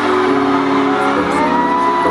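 Loud live music through a PA system: a backing track of steady held tones with a voice over it, one pitched line rising into a long held note about halfway through.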